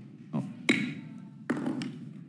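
Wooden gavel struck on its sound block, three sharp knocks within about a second and a half, the second one the loudest, gavelling the committee into recess.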